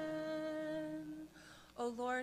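A single voice holding the last long note of a liturgical chant, sagging slightly in pitch and dying away a little over a second in.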